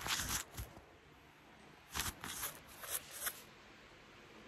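A cloth wiping a camera lens up close: a rubbing swish at the start, then a quick run of short rubbing strokes between about two and three and a half seconds in.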